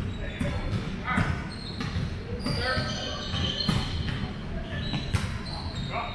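Volleyball being struck and bouncing during a rally in a large, echoing gym, several sharp hits about a second apart. Players' voices are heard, but no words can be made out.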